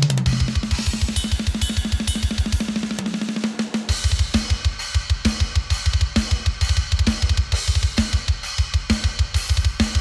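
Soloed metal drum groove from the Hertz Drums virtual drum kit, with a parallel compression bus blended in. Very fast double bass drum runs continuously under cymbals, pausing briefly around three to four seconds in; after that the snare hits about once a second over the kicks.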